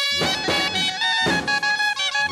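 A clarinet and a second small wind instrument playing a melody together in sustained notes that change pitch every fraction of a second.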